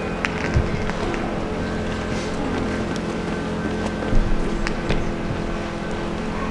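Steady hum of vehicle engines idling, with several held tones, and a few faint clicks and a light knock about four seconds in.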